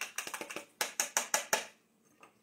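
A fork whisking beaten egg in a small bowl: a quick run of clicking taps against the bowl, about seven or eight a second, stopping about a second and a half in.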